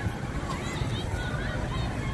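Outdoor amusement-park background: faint distant voices over a low, uneven rumble of open-air noise on the microphone.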